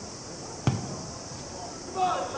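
A single thump of a football being kicked, about a third of the way in, over a steady hiss.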